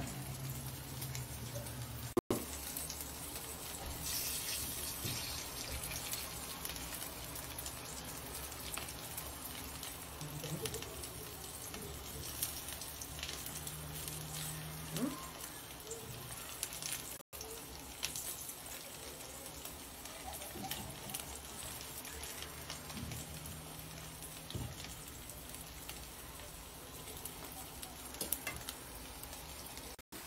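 Syrniki (cottage-cheese pancakes) sizzling in oil in a non-stick frying pan: a quiet, steady frying crackle.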